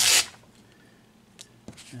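A hook-and-loop sanding disc torn off the backing pad of a cordless drill's sanding attachment: one short, loud rip at the very start, then a couple of faint handling clicks.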